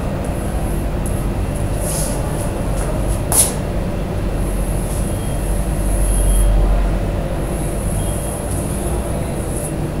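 A steady low rumble and hiss with a constant hum, over which chalk scrapes on a blackboard as a circle is drawn, and one sharp click about three and a half seconds in.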